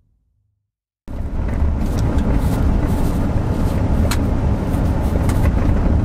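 Silence for about a second, then the steady rumble of road and tyre noise heard inside a car's cabin while driving on a gravel road, with scattered small ticks of gravel against the underside.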